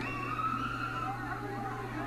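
Quiet ballpark ambience from a TV broadcast: faint distant voices with a long held call over a steady low hum.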